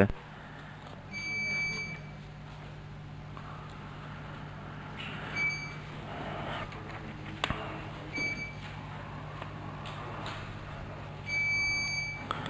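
Electronic council voting system beeping during a vote: a high beep about a second in, two short beeps in the middle and a longer beep near the end, over a steady low hum of the sound system and faint room noise.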